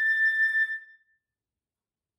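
Solo concert flute holding the last note of the piece, a long high A that ends about a second in.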